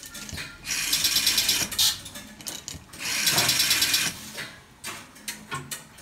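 Rotary telephone dial wired into a GEC PAX exchange being dialled: twice the dial whirs back for about a second, sending its string of line-breaking pulses, with scattered mechanical clicks between as the finger winds it and the exchange's relays and selectors step.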